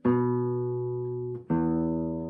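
Nylon-string classical guitar: a fingerpicked chord rings out and fades, then is cut short as a second chord is struck about a second and a half in and left to ring.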